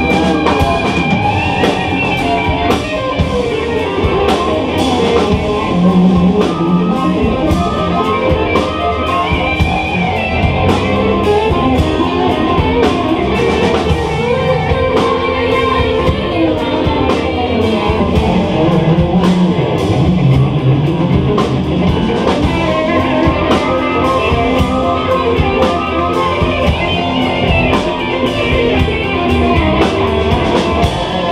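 A live oriental rock band playing, with electric guitar to the fore over bass guitar, oud and drums keeping a steady beat.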